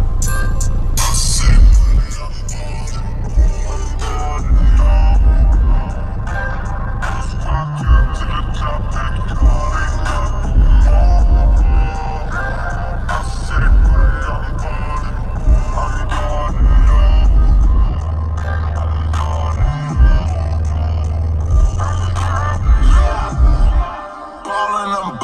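Hip-hop music with rapped vocals played loud on a car stereo through a single 12-inch trunk subwoofer, heard inside the car's cabin. Deep bass notes swell in strong stretches every few seconds.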